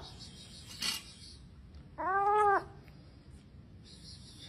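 A kitten trapped in a floor drain meowing once, about two seconds in: a single call of about half a second whose pitch rises and falls.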